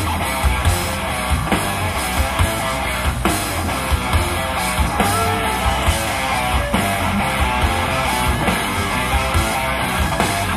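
Rock band playing live, with electric guitar over drums and bass keeping a steady beat.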